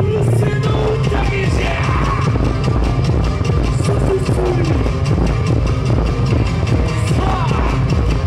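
Loud yosakoi dance music with a heavy, steady beat and a melody line.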